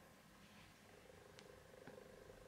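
Near silence, with a domestic cat's faint, steady purr.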